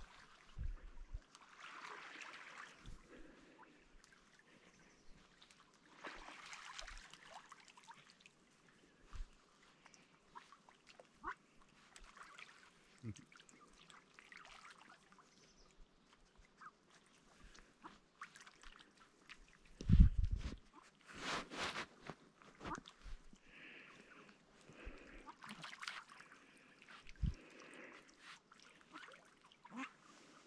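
A group of ducks feeding close to shore, with small splashes and dabbling in the water and occasional soft duck calls. A loud thump comes about two-thirds of the way through.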